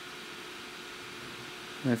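Steady faint background hiss with a thin, even hum: room or fan noise. A man's voice starts near the end.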